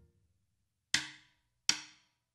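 A moment of silence, then two short, sharp percussion clicks about three-quarters of a second apart: an even count-in leading into the next verse of the song.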